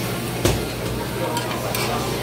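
Meat sizzling steadily on a hot griddle plate, with one sharp knock about half a second in and two lighter clicks later, as metal tongs lay meat onto the plate.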